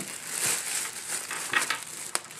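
Clear plastic packaging bag crinkling as a headphone case is pulled out of it, with a cluster of sharper crackles about one and a half seconds in.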